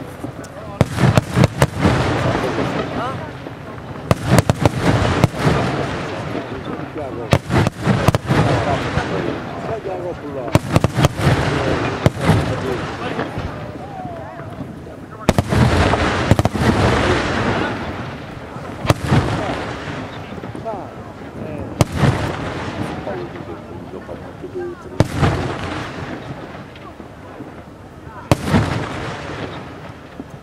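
Aerial firework shells bursting one after another, a dozen or more sharp bangs, some in quick pairs, each trailing off in a fading hiss as the stars burn out.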